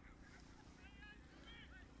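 Near silence, with a few faint short bird calls about a second in and again shortly after.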